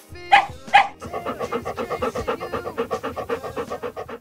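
A dog barks twice in quick succession, then pants fast and evenly, about seven breaths a second.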